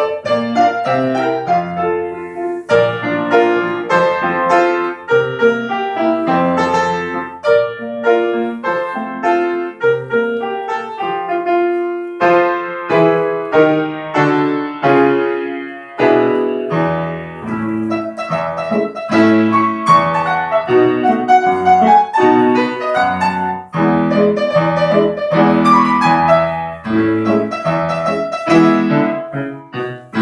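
Acoustic piano playing a piece: a melody of quick notes over lower accompanying notes, with a short break between phrases about halfway through.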